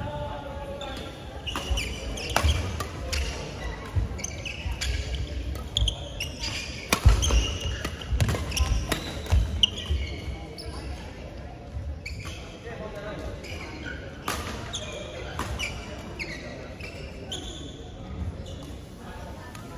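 Badminton doubles rally: rackets striking the shuttlecock again and again in quick exchanges, with footsteps and shoes squeaking on the court mat, echoing in a large sports hall. The hitting is busiest in the first half and eases off later.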